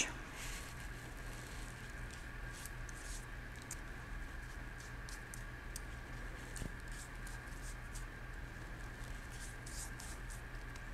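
Faint soft scratching and dabbing of a small brush dipped into a bowl of egg wash and painted over a puff pastry crust, scattered light strokes over a low steady hum.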